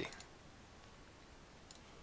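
Faint computer mouse clicks over quiet room tone: one just after the start and a couple near the end.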